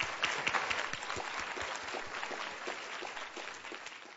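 Conference audience applauding, a dense patter of many hands clapping that slowly dies down.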